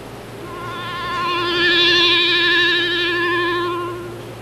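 A single long clarinet note with vibrato, played by a student. It starts soft, swells to loud and fades away again, showing the instrument's range from soft to loud.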